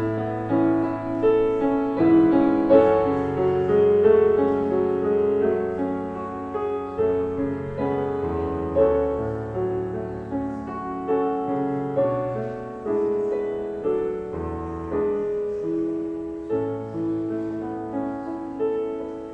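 Solo grand piano playing a slow piece of held chords under a melody, each note ringing on after it is struck.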